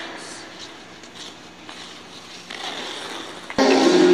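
Ice-rink ambience with faint scrapes of hockey skate blades on the ice, then about three and a half seconds in loud music cuts in abruptly.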